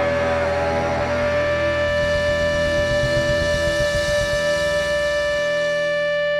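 A live band holding the last note of a song: one high note sustained steadily throughout, over a low rumble of bass and drums that drops away about five seconds in.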